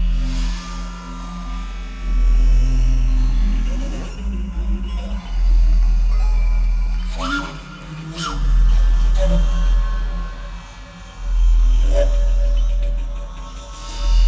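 Contemporary music played on a large square wooden bass recorder: a deep low tone swells up and fades about every three seconds, five times, with thin higher tones and quick pitch glides above it.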